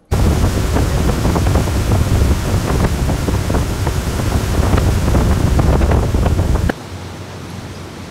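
Wind buffeting the microphone and water rushing past a fast-moving open tour boat, a loud, steady rumbling rush. It cuts off abruptly near the end to a much quieter hiss.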